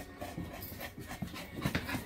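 A dog panting in short, irregular breaths.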